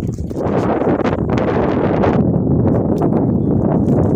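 Wind buffeting a phone's microphone in a loud, rough rumble, with irregular footfalls on loose dry earth.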